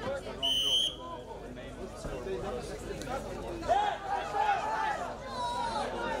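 A referee's whistle blows once, short and shrill, about half a second in. Crowd chatter and shouting voices run under it and rise after the middle.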